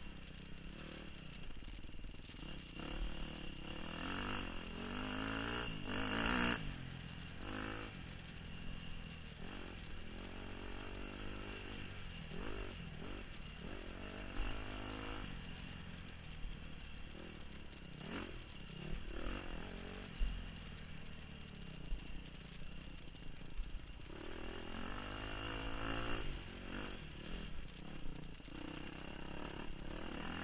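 Dirt bike engine ridden hard on a trail, its revs rising and falling again and again with the throttle, with a few sharp knocks from the bike over rough ground.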